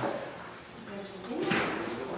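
Room noise with two sharp knocks, one right at the start and another about a second and a half in, amid faint voices of people talking.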